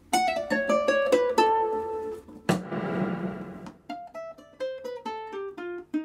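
Ukulele playing a fast lead run of single plucked notes, broken about two and a half seconds in by a brief noisy burst before the quick notes pick up again.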